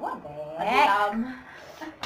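A woman's drawn-out vocal exclamation without clear words, its pitch sliding up and down, about half a second in, followed by a brief low hum.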